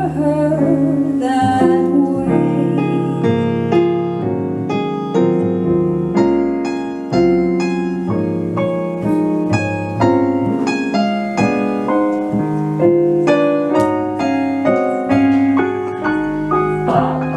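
The singer's last held note, with vibrato, fades about a second in. A jazz piano solo on a Yamaha stage piano follows, with quick runs and chords, accompanied by a plucked double bass.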